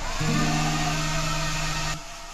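Hand-held hair dryer blowing: a steady rushing whoosh that cuts off at the end, over soft acoustic guitar music.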